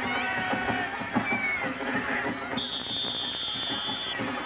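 Referee's whistle, one steady high-pitched blast of about a second and a half near the end, over stadium crowd noise.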